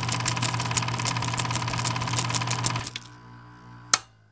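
Vintage film projector sound effect: a rapid, even clatter of film running through the gate over a steady hum, stopping about three seconds in, with one sharp click near the end.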